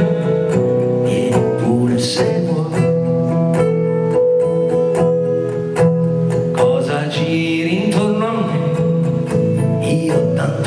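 Live acoustic song: a steel-string acoustic guitar strummed, with a cello holding long bowed notes underneath and a male voice singing in places.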